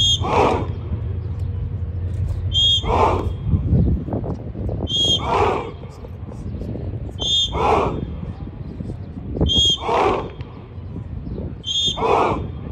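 A short, shrill whistle blast about every two and a half seconds, five times, each followed at once by a group of men shouting together in unison on the drill count.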